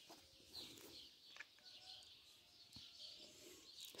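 Near silence with faint, scattered bird chirps and a couple of soft clicks.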